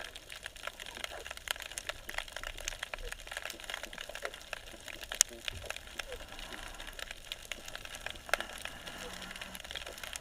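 Underwater crackling: many sharp clicks and snaps at irregular intervals over a faint hiss, typical of snapping shrimp on a bay bottom. The loudest single snap comes about five seconds in.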